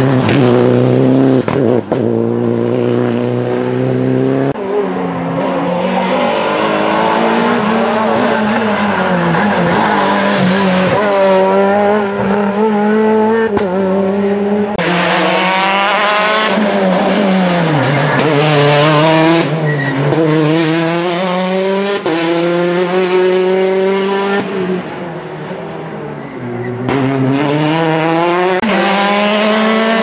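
Rally cars passing at full speed on a tarmac stage: a Citroën DS3 and then Peugeot 208 T16s, engines revving hard. The pitch climbs and drops again and again through gear changes, with a brief quieter lull near the end before the next car arrives.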